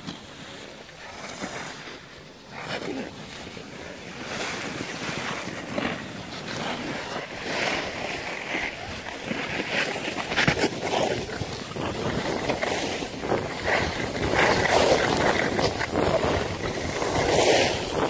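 Skis sliding and scraping over packed snow, mixed with wind rushing over the phone's microphone. The noise grows gradually louder over the stretch.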